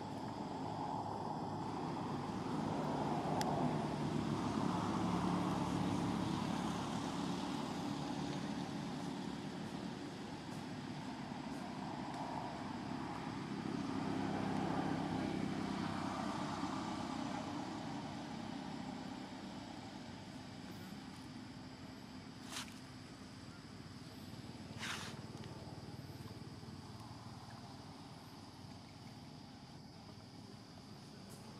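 A motor vehicle engine passing by, growing louder and fading away twice. Two sharp clicks come near the end.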